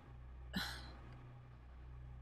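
A single brief breath-like vocal sound from a woman, about half a second in, over a faint steady low hum.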